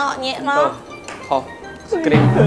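Chopsticks and cutlery clinking against plates and bowls during a meal, under background music and talk.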